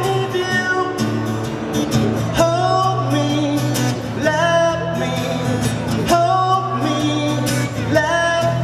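A man singing to his own strummed twelve-string acoustic guitar, through a stage sound system, in phrases over steady strumming.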